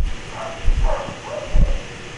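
Low thumps of a card deck being handled and set down on a cloth-covered table, three in all, with a faint whine in the background.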